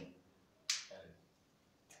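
A pause in which one short, sharp hiss, like a spoken 'sh', comes from the man's mouth less than a second in and fades quickly. The rest is quiet room tone.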